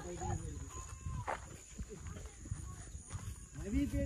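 Footsteps and rustling of a person walking along a grassy path, with faint voices coming in near the end.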